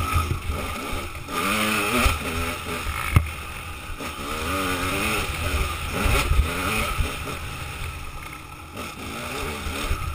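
Dirt bike engine on a trail ride, its revs rising and falling several times as the rider gets on and off the throttle, with wind rumbling on the camera microphone. A sharp knock about three seconds in.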